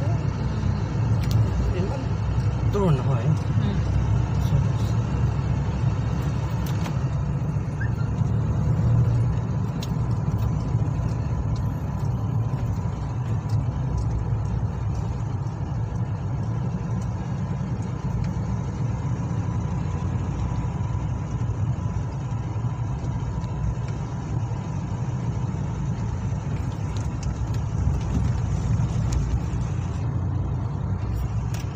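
Car interior noise while driving: a steady low rumble of engine and tyres on the road, heard from inside the cabin.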